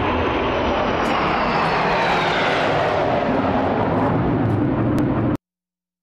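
Formation of military jets flying overhead: a loud rush of jet noise with a whine that falls in pitch as they pass. The sound cuts off suddenly near the end.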